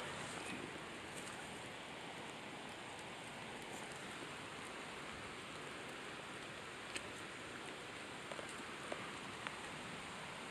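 Faint, steady outdoor background hiss, with a few faint short clicks in the second half.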